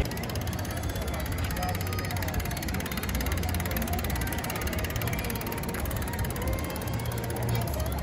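Rapid, even ticking of a bicycle's freewheel hub as the bike is wheeled along, over a steady outdoor background of people and street noise.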